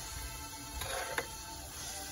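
Faint background music with a held note, under a few light clicks and scrapes of a plastic spatula against a pan as cooked spinach is scraped onto a plate.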